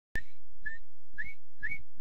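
A cartoon bird's whistle: four short, high notes about half a second apart, the later ones sliding upward. A click comes as the sound cuts in at the start.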